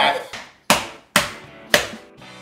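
Three hard whacks of a large kitchen knife coming down on meat wrapped in plastic on the kitchen counter, about half a second apart.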